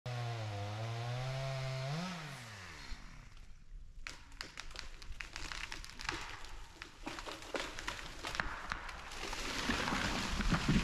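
Stihl MS250 chainsaw running, rising in pitch about two seconds in and then dying away. A felled pine tree then cracks and snaps repeatedly as it tips over, building to a rush of breaking branches near the end as it comes down.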